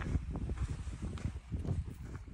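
Footsteps of hikers walking over grassy, stony mountain ground: a quick, irregular run of soft low thuds.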